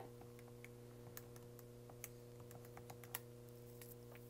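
Near silence with faint, irregular clicks of calculator keys being pressed, over a steady low electrical hum.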